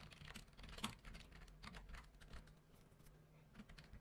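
Faint computer keyboard typing: a quick, irregular run of key clicks as a short phrase is typed.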